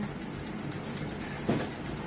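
Steady background room noise with one soft, short knock about one and a half seconds in.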